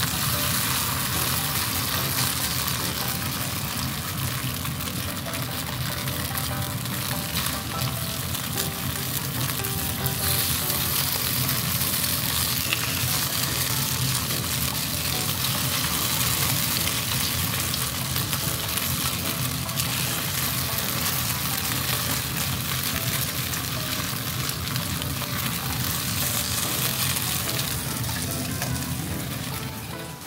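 Chicken-and-tofu tsukune patties frying in oil in a nonstick pan, a steady sizzle throughout, while they are turned over with a spatula and chopsticks.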